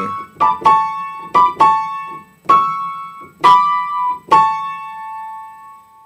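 Upright piano playing a right-hand melody in two-note chords (thirds such as A and C-sharp, B and D), walking down the keys: about seven struck pairs of notes, the last one held and left to ring out until it fades near the end.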